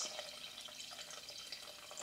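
Water pouring faintly in a steady stream from a jug into a stainless-steel saucepan of cubed potatoes, filling it.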